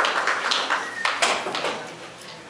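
Audience applause in a room, thinning out and fading into a few scattered claps.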